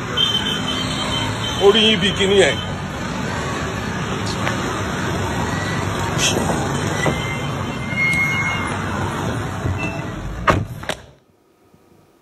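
Steady road traffic noise picked up on a phone recording, with a brief voice about two seconds in; the sound cuts off suddenly about eleven seconds in.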